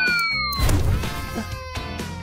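Background music with a long, falling, whistle-like gliding tone that ends about half a second in.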